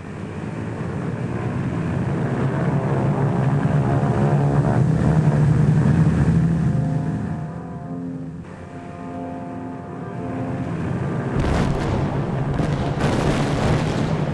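Propeller aircraft engines droning steadily, swelling and easing, with a run of sharp cracks in the last couple of seconds.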